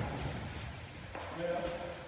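Indoor sports hall ambience with players' distant voices during a five-a-side soccer game. There is a soft knock about a second in.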